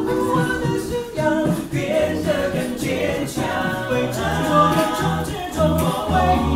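A six-man vocal group singing a cappella: several voices in close harmony over a low bass line that comes in strongly about four seconds in, with a steady beat of vocal percussion.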